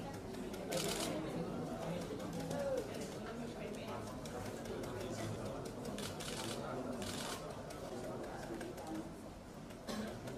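Several people talking indistinctly at once, a steady background chatter of voices. A few short rustling noises come through it, about a second in and again around six to seven seconds.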